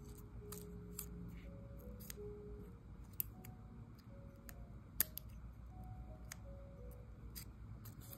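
Faint background music, a slow run of soft single notes, with scattered small clicks of metal tweezers handling a paper petal; the sharpest click comes about five seconds in.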